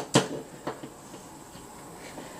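Light clicks of a USB SD card reader and its cable being handled: two sharp clicks close together at the start and a softer one under a second in.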